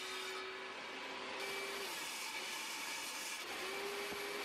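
Table saw running, a steady whirring noise with a faint hum that fades out about two seconds in and comes back near the end.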